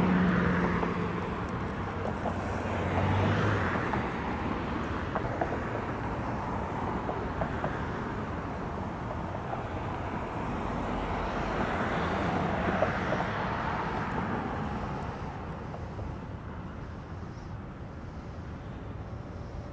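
Road traffic: a steady noise of passing cars, swelling as vehicles go by about three seconds in and again around twelve seconds, then easing off.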